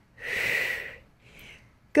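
A woman's strong breathy exhale lasting under a second, followed by a fainter short breath about a second and a half in: breathing under the effort of a side-lying Pilates exercise.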